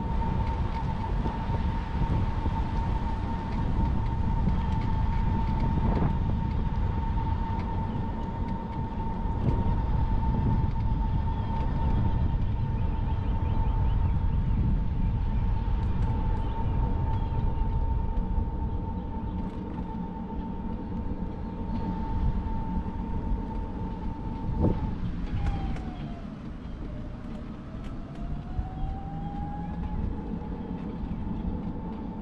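Electric scooter's motor whining at a steady pitch while riding, over low rumble from tyres on concrete and wind on the microphone. About 25 seconds in there is a click, then the whine drops in pitch and glides back up as the scooter slows and picks up speed again.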